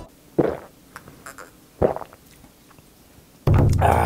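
Two short gulps as a shot of soju is swallowed, then about three and a half seconds in a loud burst of music-like sound effect starts suddenly.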